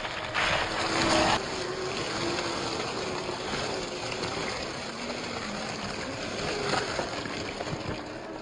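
1/10-scale RC crawler (Axial SCX10 II) with a 540 35-turn brushed motor driving over dry leaves: a low, wavering motor whine under rustling and crunching leaves. The leaf noise is loudest in a burst from about half a second to a second and a half in.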